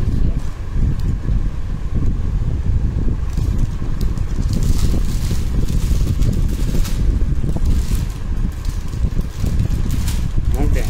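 A loud, steady low rumble with intermittent rustling, as garments and their plastic packaging are handled close to the microphone.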